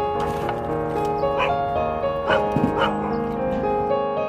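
A dog barking, three short barks between about one and three seconds in, over piano background music.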